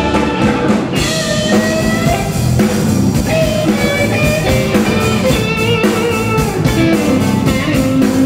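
Live blues band playing: electric guitar lines with sustained, bending notes over drum kit, bass and keyboard.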